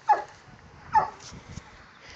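A dog barking twice in short, high yips about a second apart, each call dropping in pitch.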